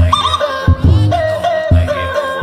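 Phonk music: deep bass hits land about every second under a sustained, wavering melodic line.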